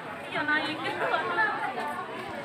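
Several people talking at once close by: overlapping chatter with no single voice or clear words standing out.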